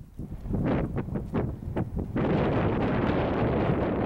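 Wind buffeting the microphone, coming in irregular gusts and then, about two seconds in, turning into a steady loud rush.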